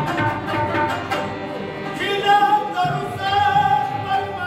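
Pashto folk ensemble playing: tabla strokes, harmonium and rabab, with a man's voice starting to sing about two seconds in, holding long wavering notes.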